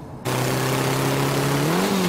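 Motorcycle engine running at speed with heavy wind and road noise, the engine note held steady and then rising near the end as it revs harder.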